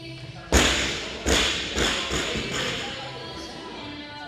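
Loaded barbell with rubber bumper plates dropped from overhead onto a rubber gym floor after a snatch. One heavy crash comes about half a second in, then the bar bounces four more times, each bounce weaker.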